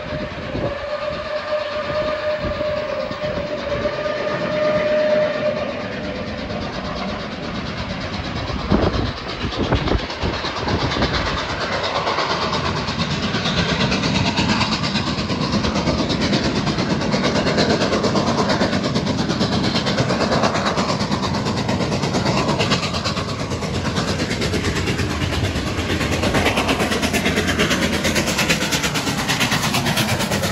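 Reading & Northern 2102, a Reading T-1 4-8-4 steam locomotive, blowing its whistle in one long steady note that ends about five seconds in. It then approaches at the head of a passenger train, its rumble on the rails growing louder from about ten seconds in and staying loud as it draws level near the end.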